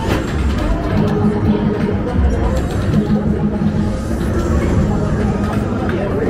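Busy arcade ambience: music and electronic game tones over the chatter of a crowd, with a few short pitch sweeps and clicks.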